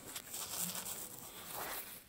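A wood burner's fire brick scraping and rubbing against the firebox as it is worked loose and turned around by hand, a low, uneven scratching with a few small clicks.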